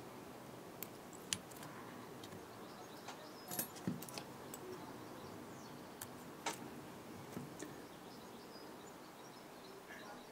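Faint handling noise from fly tying: a few small, scattered clicks and ticks from fingers and tools working thread at the vise, over a low steady hiss.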